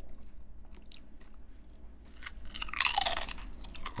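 A crisp snack chip bitten and crunched close to a microphone: a few faint crackles, then one loud, bright crunch about three seconds in.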